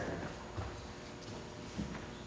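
Low background noise of a large legislative chamber with a few soft, irregular knocks.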